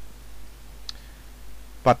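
A pause in the narration with a steady low hum and one faint short click about a second in, then a single spoken word near the end.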